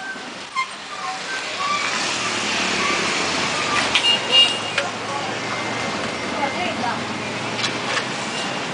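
A motor vehicle running on the street. Its noise builds over the first two seconds and then holds steady with a low hum. There are faint voices and a sharp click about four seconds in.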